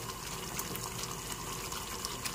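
Yogurt gravy cooking in a nonstick pan: a soft, steady hiss with faint small pops.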